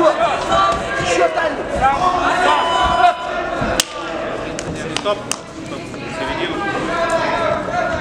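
Shouting voices from coaches and spectators during a kickboxing bout, with a couple of sharp smacks of gloved strikes landing, about four and five seconds in.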